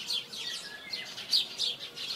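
Small birds chirping: short, high, falling chirps that come a few at a time, over a light hiss.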